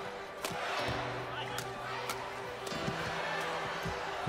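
Badminton rackets striking the shuttlecock in a fast rally: sharp hits about once a second. Steady sustained music tones run underneath.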